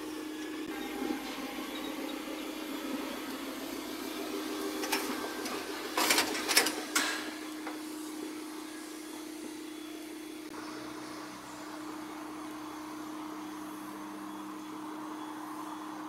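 A Chevy Tahoe towing an empty steel utility trailer drives past, over a steady hum, with a few knocks from the trailer about six to seven seconds in as it passes.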